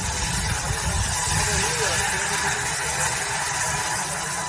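Dazzini PD1500 diamond wire saw running steadily as its water-cooled wire cuts through andesite: a continuous loud hiss over a low machine drone.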